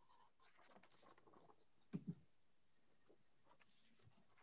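Near silence: faint room tone, with one brief soft sound about halfway through.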